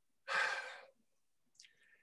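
A man breathing out audibly, one breathy exhale of about half a second that fades away. A faint short breath follows near the end.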